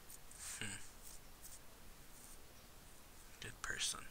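Faint, whisper-like voice sounds in two short bursts, one about half a second in and one near the end.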